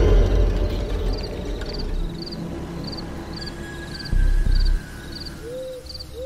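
Horror sound-effect bed: a deep low rumbling hit at the start and another short one about four seconds in, under evenly repeating cricket chirps about twice a second, with one owl hoot near the end.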